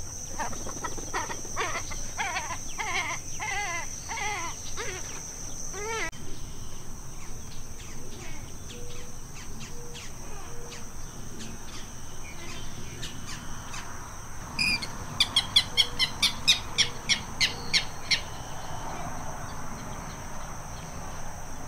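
Marsh ambience: a steady high insect drone, with a bird calling in repeated rising-and-falling notes, about two a second, over the first six seconds. Near the end comes a loud run of about a dozen sharp chips, some four a second.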